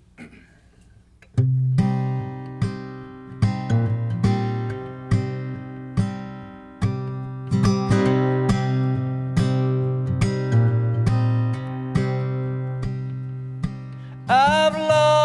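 Solo acoustic guitar, mostly in standard tuning with one string slightly out, starting about a second and a half in: a simple chord pattern of plucked notes that ring on over a sustained low bass, roughly one stroke every half second to second.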